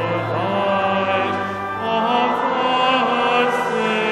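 A church congregation singing a carol together in slow, held notes, accompanied by a pipe organ.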